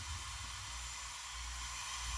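Steady, even hiss with a low hum underneath and no distinct events.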